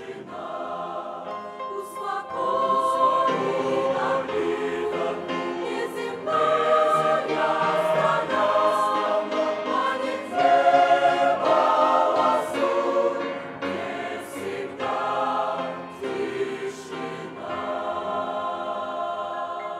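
Mixed church choir of men's and women's voices singing a slow hymn in held chords, swelling loudest about ten seconds in.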